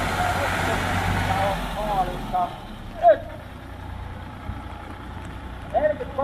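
Engine of a blue Ford farm tractor running steadily as the tractor drives past close by, then fading as it pulls away about two seconds in.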